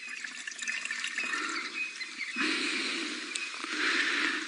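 Murky water trickling and splashing as it is poured into a clear plastic bottle. The pouring grows louder a little past halfway.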